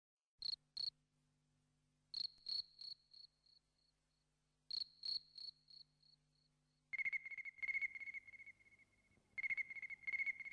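Recorded insect calls: high-pitched chirps in small groups, each group dying away, then from about seven seconds in a lower-pitched chirping in quick trilled bursts.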